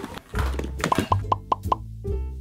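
A quick run of five short, rising pop sound effects, about five a second, over background music with a steady bass beat.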